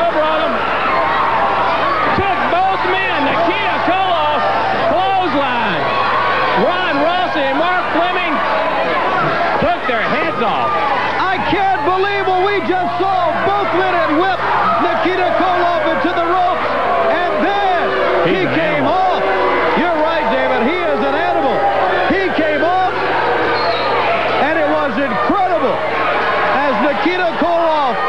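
Wrestling arena crowd yelling and shouting, many voices overlapping, with a steady low hum underneath.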